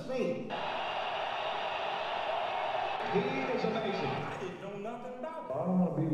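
Prerecorded tape part of a piece for percussion and electronics: a steady band of hiss for a few seconds, then fragments of a man's recorded voice reading poetry from about three seconds in.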